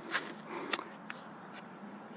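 Clear plastic wrap around an apple crinkling as it is handled and set down on grass: a few light crackles and clicks near the start and about three-quarters of a second in, over a faint rustle.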